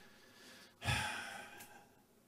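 A man's breathy sigh into a microphone about a second in, with a soft thud of breath on the mic at its start, fading out over most of a second.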